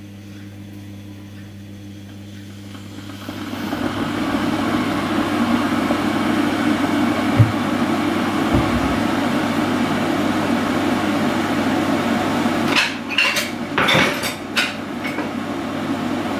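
A steady rushing noise sets in a few seconds in and holds. Near the end, dishes clink and knock against each other as they are handled at a kitchen sink.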